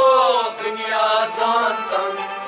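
Kashmiri Sufi devotional song: male voice singing a long held, wavering note over a steady harmonium drone.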